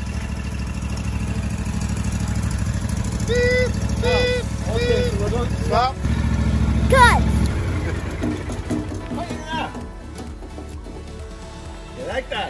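Engine of a Hustler Sport zero-turn ride-on mower running steadily, then dropping away about seven and a half seconds in.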